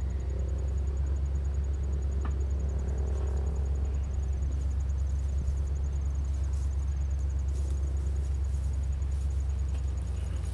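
Nissan 4x4's engine idling steadily, a constant low rumble.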